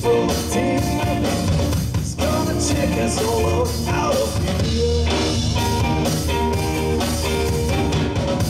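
Live blues-rock band playing an instrumental passage: electric guitar lead with bending notes over a drum kit and rhythm guitar, loud and steady.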